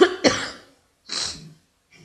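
A person coughing: two coughs close together at the start, then a shorter, breathier burst about a second in.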